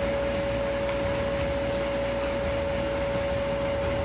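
A steady machine hum with one constant high-pitched tone running through it, unchanging throughout.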